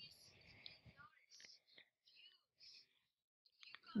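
A boy's voice, faint and thin, barely above silence, heard in short broken snatches.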